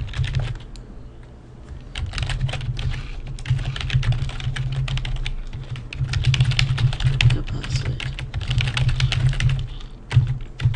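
Typing on a computer keyboard: rapid runs of keystrokes as an email address and a password are entered, sparse for about the first two seconds, then steady.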